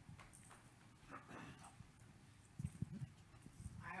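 Near silence: hall room tone with a few faint, soft knocks, the clearest about two and a half to three seconds in.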